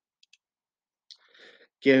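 Near silence broken by two faint, quick clicks, then a soft click and a faint breath before a man starts speaking near the end.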